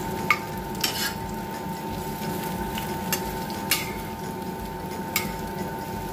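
Onion pakoras sizzling steadily in hot oil in a wok, with about six sharp taps and scrapes of a spatula against the pan as they are turned.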